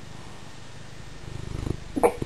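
Maine Coon cat purring steadily, a low fine-pulsed rumble that grows louder in the last half-second or so.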